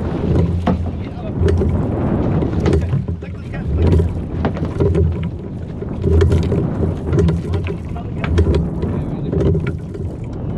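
A yellowfin tuna thrashing and splashing at the surface as it is gaffed beside the boat, with repeated sharp knocks and splashes. Wind gusts buffet the microphone with a heavy rumble.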